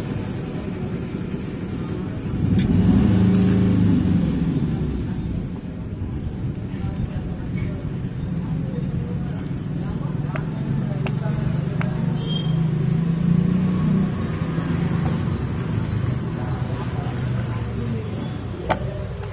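Steady low rumble of a motor-vehicle engine, swelling about three seconds in and again shortly before the end. Over it come a few light clicks and rustles from the plastic-wrapped box being handled.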